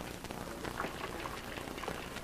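Faint background of a busy office: a steady hiss with scattered light clicks.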